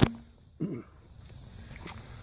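Insects, such as crickets, making a steady high-pitched drone. A sharp click comes at the start, a short low sound falls in pitch about half a second in, and another click comes near the end.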